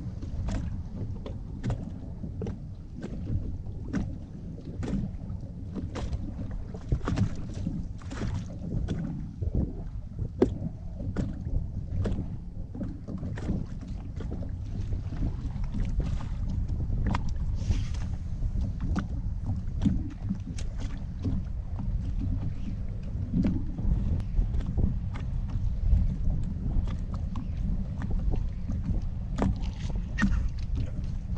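Wind rumbling on the microphone, with small waves lapping against a fishing boat's hull and many short, sharp ticks and slaps scattered through.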